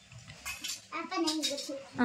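A few light metallic clinks like household utensils being handled, then a voice speaking briefly in the second half.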